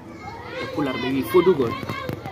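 Speech: a man talking, most likely in a local language the recogniser did not transcribe.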